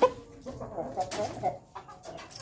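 Rooster clucking in a quick run of short calls, after a sharp click right at the start.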